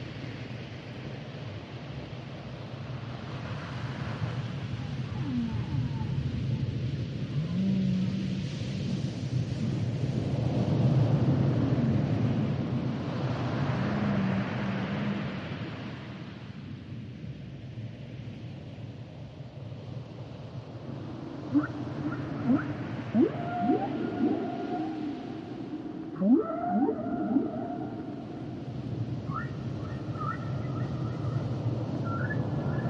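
Humpback whales singing underwater: long low moans over a steady hiss of sea noise, then, from about two-thirds of the way through, a run of quick rising whoops and short higher cries.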